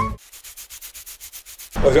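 Faint, fast, even scratching, about nine short strokes a second, after music cuts off. A man's voice begins near the end.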